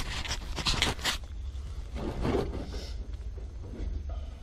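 Handling noise of scraping and rustling as a freshly glued inch-and-a-half PVC pipe is pushed into its fitting on a sump pump and held. A burst of quick strokes comes in the first second, then fainter rubbing.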